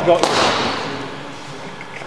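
A man's short word, then a single sharp knock about a quarter of a second in that rings on and fades over about a second, echoing in a large hall.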